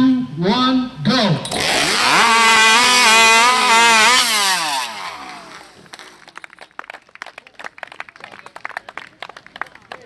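Modified two-stroke racing chainsaw revving up and down in quick bursts, then running flat out at a steady high pitch for about three seconds as it cuts through a timber. The engine falls away about five seconds in, leaving faint scattered crackles.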